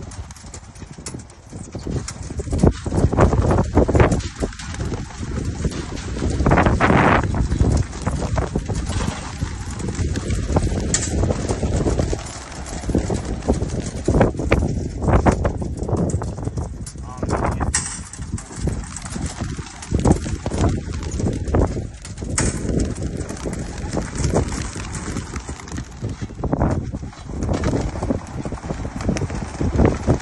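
Racing pigeons' wings clattering as flocks burst out of opened metal release crates and take off, mixed with the knocks of crate doors and lids, in a continuous irregular racket of flaps and knocks.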